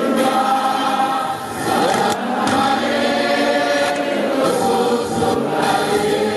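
Voices singing together in Lingala, with long held notes.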